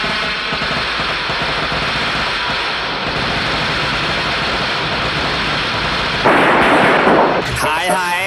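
A long, dense run of firecrackers crackling and popping, with a louder rushing burst about six seconds in.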